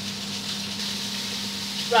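Salmon fillets sizzling in oil in a frying pan, a steady hiss with a low, even hum underneath.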